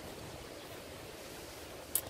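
Faint, steady outdoor background hiss with no distinct events, and a short sharp hiss near the end.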